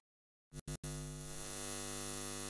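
Neon sign sound effect: a few quick flickers about half a second in as the sign switches on, then a steady electrical buzzing hum.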